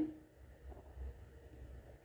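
Faint, soft handling sounds of stiff flour dough being kneaded and pressed against a steel plate, with a couple of dull bumps about a second in.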